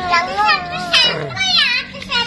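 A young child's high-pitched voice, talking or babbling in several short utterances without clear words.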